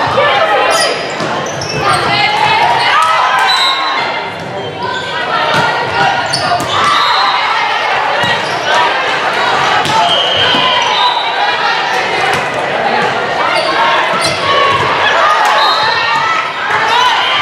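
Live sound of an indoor volleyball rally in a gym: players and spectators calling and shouting over one another, with sharp smacks of the ball being struck, all echoing in the hall.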